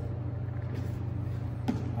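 Steady low hum of room background noise, with a faint click about two-thirds of a second in.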